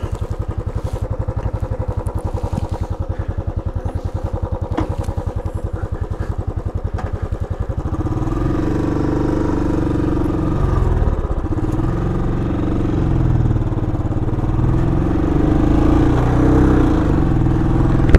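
Royal Enfield Classic 500's fuel-injected single-cylinder engine idling with an even, steady beat. About eight seconds in it pulls away, getting louder, its pitch rising and falling as it accelerates through the gears.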